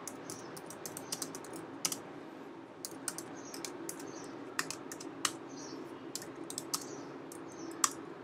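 Computer keyboard typing: quiet, irregularly spaced key clicks over a faint steady background hum.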